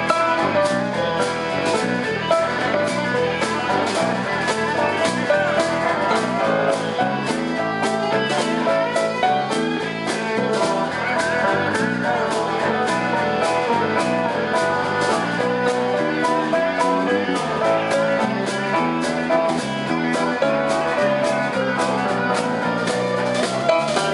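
Live electric blues band playing an instrumental passage, electric guitar out front over keyboard, bass guitar and a steady drum-kit beat.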